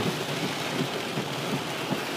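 Heavy rain on a car, heard from inside the cabin as a steady hiss.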